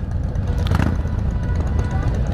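Harley-Davidson touring motorcycle's V-twin engine and the surrounding group of motorcycles running at low speed, a steady low rumble, with music playing as well.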